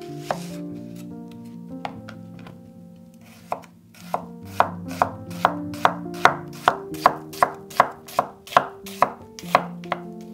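A chef's knife slicing a red onion on a wooden cutting board. A few scattered cuts come first, then from about four seconds in a steady run of crisp knife strikes, about two or three a second. Soft background music plays underneath.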